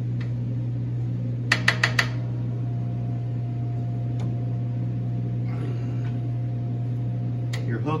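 Four quick knocks about one and a half seconds in, from a spatula working against a commercial stand mixer's stainless steel bowl and paddle, over a steady low hum. A faint steady tone sounds through the middle.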